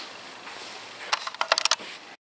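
A quick run of key clicks and taps, about a second in, over faint room hiss, as keys are pressed to stop the recording.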